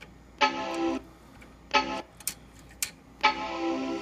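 Macintosh Quadra 650 sounding its 'death chime' error tones through its internal speaker: three sustained electronic notes, long, short, long, with short gaps between. The chime is the machine's sign of a failed startup test, which the owner thinks a missing ADB keyboard could explain.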